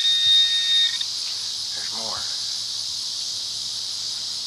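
A handheld metal-detecting pinpointer probed into a dig hole, giving a steady high electronic alert tone that cuts off about a second in. Insects keep up a steady high buzz underneath.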